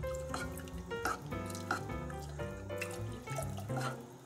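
Milk pouring in a thin stream from a glass measuring jug into a saucepan of roux, under background music of held notes that change every fraction of a second.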